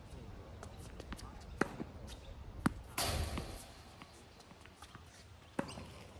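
Tennis balls being hit and bouncing on a hard court: a few sharp pops about a second apart, with a brief, louder rush of noise about three seconds in.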